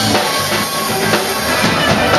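A live band playing, with a drum kit striking a steady beat under the other instruments.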